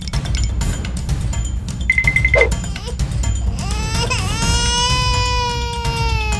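A long, high-pitched wailing cry that rises and then holds for over two seconds in the second half, over background music with a heavy bass beat. A short rapid beeping comes about two seconds in.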